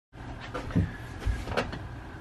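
A few soft knocks and bumps over a low steady hum.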